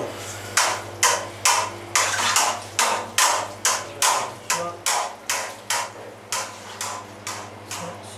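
A metal curd-breaking tool plunged rhythmically into sheep's-milk curd and whey in a stainless vat, a sharp splashing knock about twice a second and slowly getting softer. It is breaking the curd into grains between wheat and maize size.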